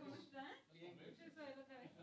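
Faint, indistinct conversation: voices talking away from the microphone, a woman's voice among them.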